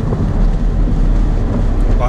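Steady low rumble inside the cabin of a Mercedes-AMG A45 on the move: engine and road noise at an even, cruising pace.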